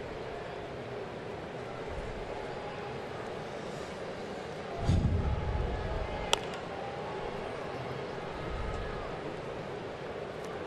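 Ballpark crowd ambience with a steady murmur of chatter. A low rumble comes in just before five seconds, and about six and a half seconds in a single sharp pop sounds: a pitch smacking into the catcher's mitt.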